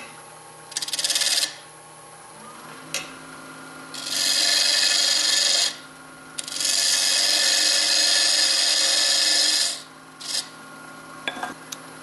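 A wood lathe spins a lignum vitae blank while a turning gouge profiles it. The cutting comes in hissing bursts: a short one about a second in, then two long ones of about two and three seconds, and a brief one near the end. Under the cuts the lathe's steady running hum goes on, and its tone rises a little about two seconds in.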